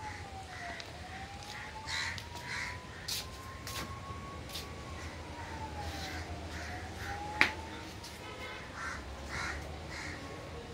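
Crows cawing over and over, with a faint wailing tone slowly falling and rising behind them and one sharp click about seven seconds in.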